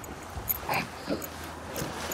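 A few short, low grunts from a person, with small knocks, over a faint steady background noise.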